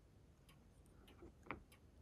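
Near silence with a few faint, light clicks, the clearest about one and a half seconds in.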